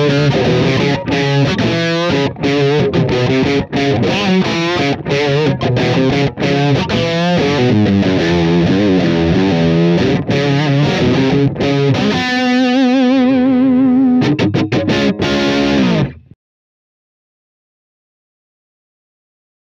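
Les Paul-style electric guitar (Maybach Lester), tuned a half-step down, playing distorted hard-rock rhythm riffs through Universal Audio's emulation of the Marshall Silver Jubilee 2555 amp with the input gain full up, for a crunchy, slightly scooped tone. The chords are chopped with short gaps. About twelve seconds in, a held chord rings with vibrato for about two seconds, a few more stabs follow, and the playing stops about sixteen seconds in.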